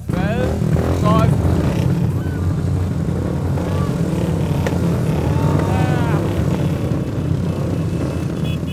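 Many Royal Enfield single-cylinder motorcycle engines running together in a steady, dense low rumble.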